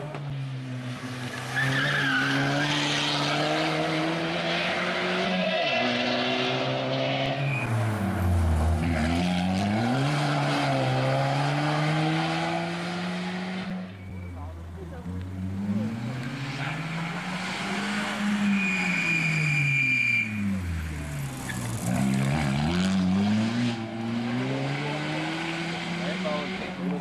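Suzuki Swift rally car engine revving hard on a stage run, its pitch repeatedly climbing and then dropping sharply as the driver accelerates, lifts off and changes gear.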